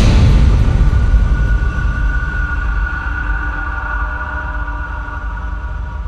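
Music sting for a TV programme's logo: a heavy low hit just at the start, then a deep rumble under a held tone that slowly dies away.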